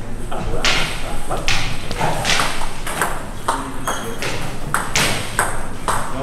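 Plastic table tennis balls being hit with bats and bouncing on the table in a steady run of sharp clicks, roughly two a second, during a slow topspin drill.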